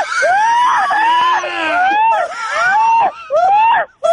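Wordless yelling or wailing from more than one voice, overlapping, its pitch swooping up and down in long arcs.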